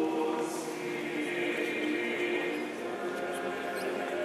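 A church choir singing an Orthodox chant slowly, several voices holding long notes that change pitch in steps.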